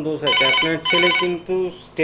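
Electronic telephone ringer sounding in two short bursts of several high tones in quick succession: a call coming in on the phone-in line. A man's voice goes on underneath.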